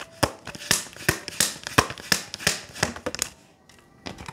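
A deck of tarot cards handled by hand, shuffled and tapped: about a dozen sharp card snaps and taps, roughly three a second, that stop a little after three seconds in.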